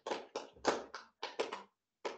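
Brief clapping from a few people, the separate claps distinct, dying out shortly before the end.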